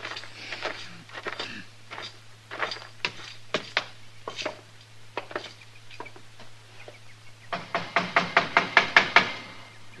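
Radio-drama sound effects: footsteps walking for several seconds, then, a little after halfway, a fast run of about ten knocks on a wooden door, growing louder, over a steady low hum on the recording.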